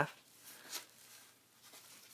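Faint rustling of a square sheet of paper being folded in half and creased by hand.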